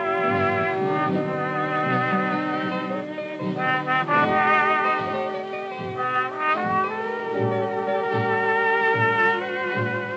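Instrumental break of an early-1930s swing band, with brass leading, played from a 78 rpm record.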